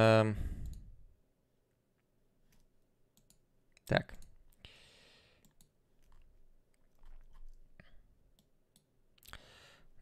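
Faint, irregular clicking of a computer mouse at a desk, a few isolated clicks scattered across several seconds, with a short spoken 'так' about four seconds in.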